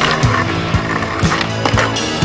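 Skateboard's metal trucks grinding along a concrete ledge, a scraping hiss in the first half second, then the board rolling on concrete, all under loud music with a steady beat.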